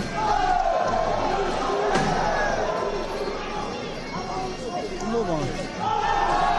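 Arena crowd and voices around the ring shouting during a kickboxing exchange, loudest in the first couple of seconds and again near the end. There is one sharp thud about two seconds in.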